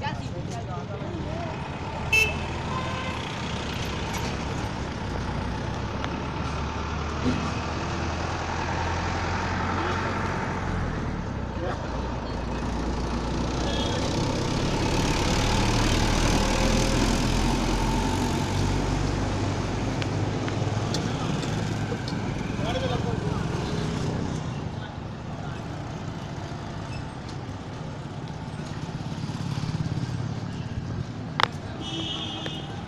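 Motorcycle engine running steadily while it is ridden through town traffic, over a wash of street noise. The noise swells to a louder rush about halfway through, then eases.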